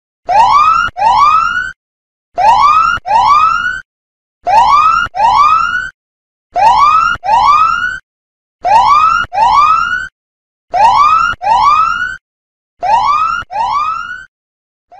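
Countdown timer's time-up alarm: an electronic siren-like sound effect of rising tones in pairs, seven pairs about two seconds apart, signalling that the time has run out.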